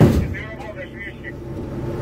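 A single heavy gunshot at the very start, heard from inside an armoured fighting vehicle, ringing away over about half a second, over the vehicle's steady low engine rumble. Faint high warbling tones follow about half a second in.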